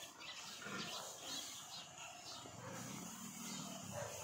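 Pigs grunting faintly in their pens, with a longer low grunt in the second half.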